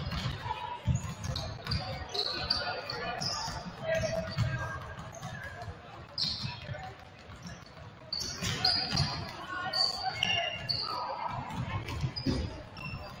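Several basketballs bouncing irregularly on a hardwood gym floor, with dribbles and bounces overlapping, in a large reverberant gym.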